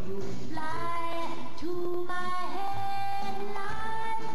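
Music with a singer holding long, sustained notes that change pitch every second or so over an instrumental accompaniment.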